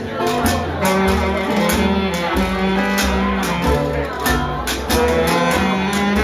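A jug band playing live: guitar, harmonica and saxophone over a moving bass line with a steady beat.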